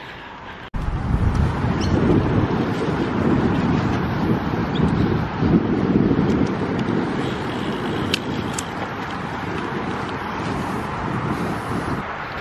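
Wind rushing over the microphone of a camera carried on a moving bicycle, a steady rumbling noise that starts suddenly after a brief quieter moment under a second in.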